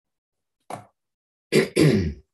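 A man clearing his throat: a short rasp about two-thirds of a second in, then a longer, louder one near the end, with dead silence between.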